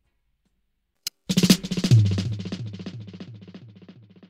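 Reggae dub mix: about a second of silence, one drum hit, then a drum-kit fill with a bass note. The bass note repeats in a fast echo, about four times a second, fading away.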